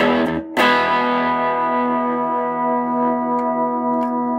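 Electric guitar through a Magnatone M192-5 amplifier: strummed chords, then about half a second in one chord is struck and left to ring out, fading slowly.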